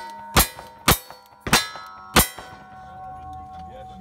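Four revolver shots fired in quick succession within about two seconds, each followed by the clang of a steel target. A ringing tone from the struck steel lingers after the last shot.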